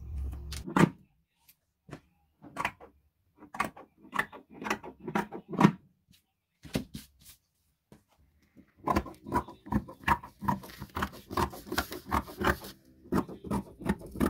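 Tailor's scissors cutting fabric: scattered short snips with silent gaps between, then a quicker run of snips in the last few seconds.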